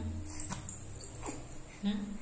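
A four-month-old baby's short coos and squeaks: three brief voice sounds, each sliding down in pitch.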